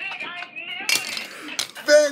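A man laughing in short bursts, broken by two sharp clinks, one about a second in and one near the end.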